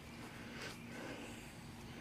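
Faint outdoor background noise with a low, steady hum underneath; no distinct sound event.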